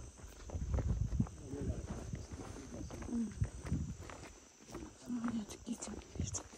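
Footsteps on a dirt path and rustling from walking, as irregular soft thumps, over a steady high buzz of insects.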